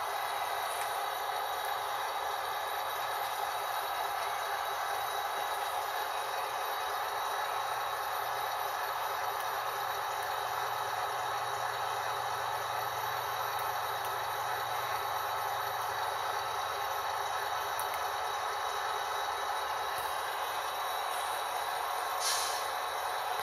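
Model diesel locomotives pulling a long train along a model railroad layout: a steady rattle and hum of motors and wheels on the track.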